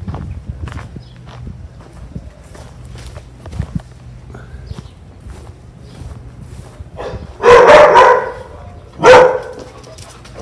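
Dogs barking at an approaching stranger: a loud burst of barks a little after seven seconds in and another short bark just after nine seconds, following a stretch of quiet footsteps on a dirt path.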